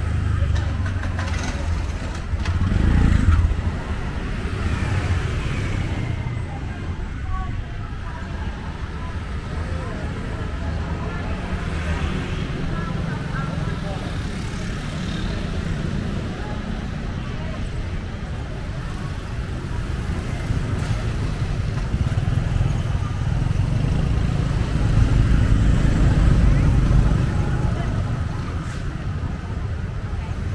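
City street traffic: motorbike and car engines with a steady low rumble that swells twice, about three seconds in and again near the end, under a murmur of voices.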